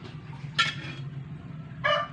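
A rooster crowing in the background: a short, loud cry about half a second in, then a longer, louder crow starting near the end.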